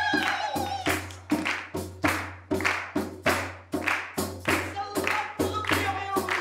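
A group of women clapping their hands in unison to a steady beat, about two to three claps a second, while women sing a party song. A held sung note ends about a second in, and the singing returns near the end.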